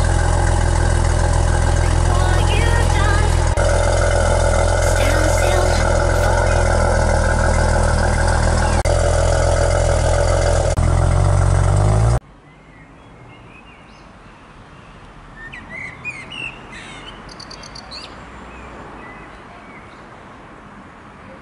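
Maserati Ghibli's V6 engine idling steadily, heard close up at the quad exhaust tailpipes, its note shifting slightly a few seconds in. It cuts off abruptly about twelve seconds in, leaving quiet outdoor ambience with birds chirping.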